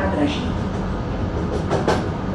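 Steady running rumble of a passenger train coach at about 50 km/h, with a sharp clack of the wheels near the end, as over a rail joint or set of points.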